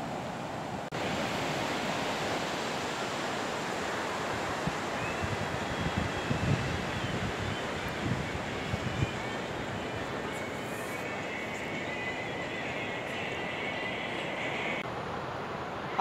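Ocean surf washing steadily onto a sandy beach, with a few wind gusts bumping the microphone midway.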